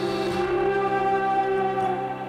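Instrumental passage of a song: sustained, held chords with no singing.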